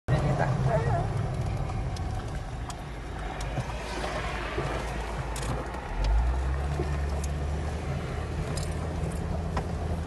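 Vehicle interior noise while driving: steady engine and road rumble heard from inside the cabin, with a few small rattles. About six seconds in, the rumble gets deeper and louder as the vehicle rolls onto a dirt track.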